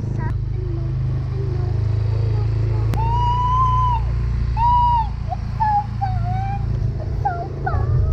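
Motor scooter running with a steady low rumble as it rides. A young child's high voice lets out two long drawn-out cries about three seconds in, followed by shorter high sliding calls.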